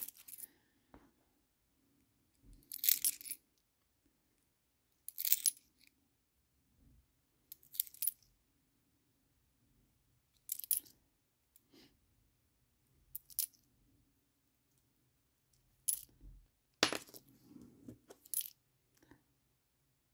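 Hong Kong ten-cent coins clinking together as they are handled and sorted one by one. There are about eight short, sharp clinks a few seconds apart, with a couple close together near the end.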